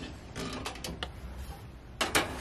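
Black+Decker toaster oven's glass door being pulled open: the hinge creaks, with a quick run of sharp metal clicks about half a second to one second in.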